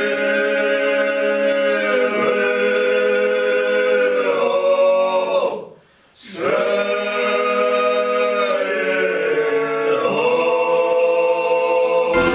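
A six-man Georgian folk ensemble singing a cappella in held chords. They break off for a short breath about six seconds in, then go on singing.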